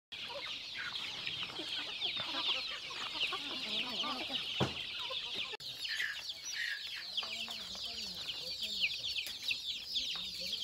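A flock of native country chickens: many young birds peeping continuously in short high chirps, with a few low hen clucks in the second half.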